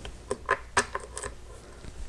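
A quick run of light clicks and taps from hands handling a plastic RC radio transmitter. The clearest four fall in the first second or so, with fainter ones after.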